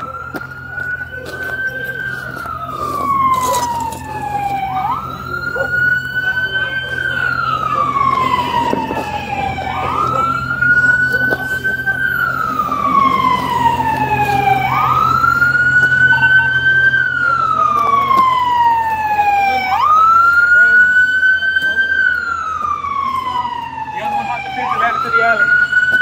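Emergency vehicle siren on a wail setting. Each cycle jumps quickly up in pitch, holds briefly, then slides slowly down, repeating about every five seconds, and it grows slowly louder. A steady low hum runs underneath.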